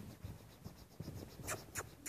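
Faint, muffled hoofbeats of a young Hanoverian mare trotting loose on arena sand, a soft thud about every half second. Two sharp clicks come about a second and a half in.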